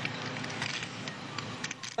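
A large building fire burning, crackling and popping over a steady noise.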